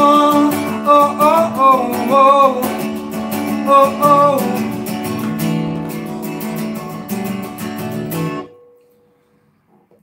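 Acoustic guitar strummed steadily while a man sings long, wavering notes without words over the first half. About eight and a half seconds in the strumming stops and the song ends, leaving near silence.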